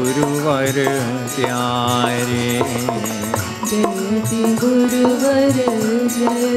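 A man singing a slow Hindu devotional chant in long, wavering drawn-out notes, accompanied by a harmonium holding steady tones underneath.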